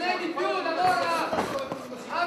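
Voices calling out over each other, with a couple of short sharp thuds from the fighters about one and a half seconds in.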